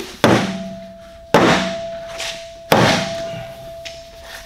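Plastic concentric vent pipe knocked down on a plywood workbench three times, roughly a second and a quarter apart, each a hollow thunk with a brief ring from the pipe. The knocks reassemble the pipe, seating the inner pipe back inside the outer one.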